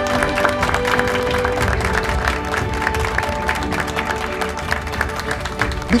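Background music with a small group of people clapping.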